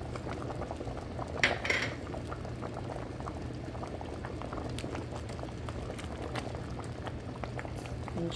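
Pot of pinto beans in broth boiling hard, a steady bubbling crackle, with one brief louder sound about a second and a half in.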